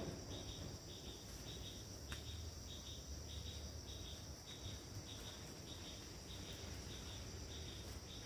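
Insects calling: a steady high-pitched buzz, with a chirp that repeats about twice a second on top of it.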